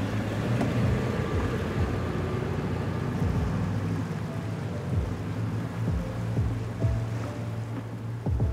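A small motorboat running through choppy sea: steady engine drone and water noise, mixed with a music score. A few short, falling low swooshes sound along the way, and higher sustained music notes come in about halfway through.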